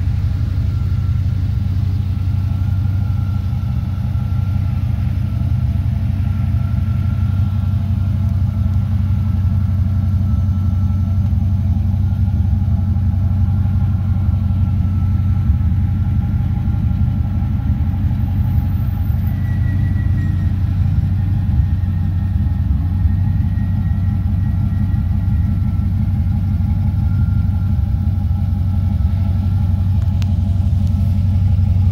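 LS2 V8 crate engine in a 1967 Camaro idling steadily.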